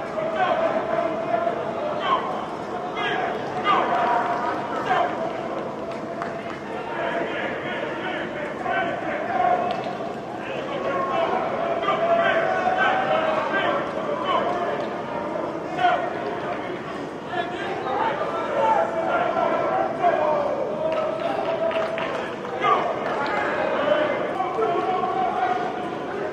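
Indistinct shouting of coaches and players running a football workout drill in a large indoor practice hall, voices calling over one another, with a few sharp hits or claps among them.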